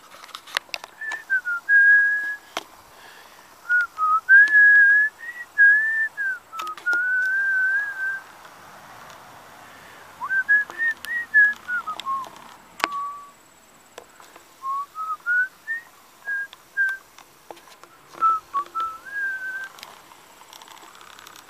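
A person whistling a tune: clear single notes that glide up and down and are held in several short phrases with pauses between them. A few sharp clicks fall among the phrases.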